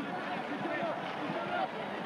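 Football stadium crowd: a steady din of many voices at once.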